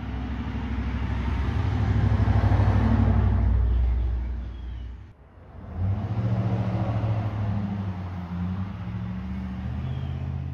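A vehicle engine running with a low rumble, growing louder over the first few seconds. It cuts off abruptly about five seconds in and starts again under a second later at a steadier pitch.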